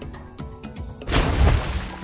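Background music, with a loud noisy crash about a second in that lasts under a second.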